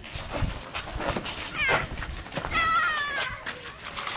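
Two high-pitched cries: a short sliding one about a second and a half in, then a longer wavering one that falls slightly in pitch about two and a half seconds in.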